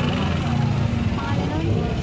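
Busy street background: a steady low engine-like hum with people talking in the background.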